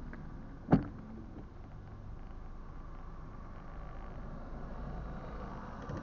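Car cabin sound with the engine idling as a low steady hum while the windscreen washer and wipers clear the glass, with one sharp knock about a second in.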